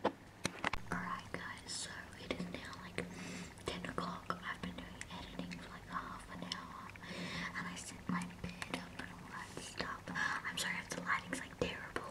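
Whispered speech, breathy with sharp hissing consonants, over a steady low hum, with scattered light clicks.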